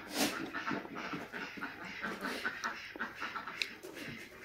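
Close-miked eating sounds: wet chewing and mouth noises with irregular small clicks as fingers work rice and fish on the leaf.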